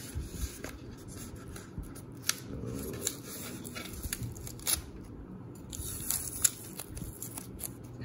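Masking tape being picked at with a fingernail and peeled off a painted plastic model hull: faint crinkling and rustling with irregular small clicks.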